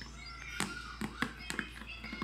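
Several light knocks and taps from small hands handling a cardboard box.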